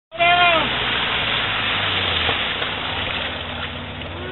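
A short shout falling in pitch at the very start, then a Polaris side-by-side's engine running under a steady rush of splashing muddy water as it drives nose-deep into a water crossing.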